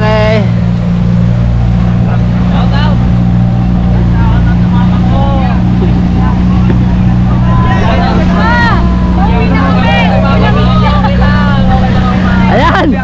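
Motorised outrigger boat (bangka) engine running at a steady cruising pitch while under way, with passengers' voices faintly over it, more of them in the second half.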